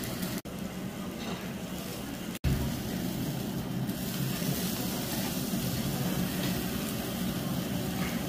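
Beef sizzling on a charcoal grill: a steady hiss, broken by two brief drop-outs about half a second and two and a half seconds in.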